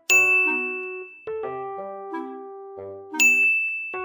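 Light background music of short plucked, bell-like notes, with two loud bright dings, one at the very start and one about three seconds in, each ringing out and fading.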